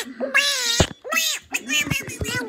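Two drawn-out meows, each rising then falling in pitch, the first about half a second long and the second a little shorter.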